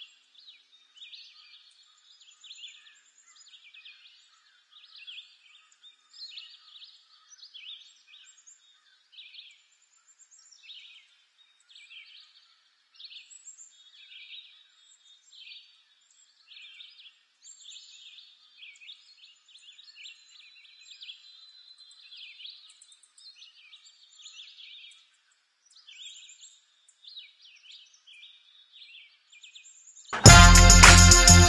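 Faint woodland birdsong: small birds calling over and over in short high chirping phrases, a phrase every second or so.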